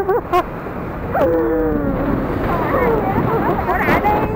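Steady wind and road noise from a moving motorbike, with a muffled voice talking over it from about a second in.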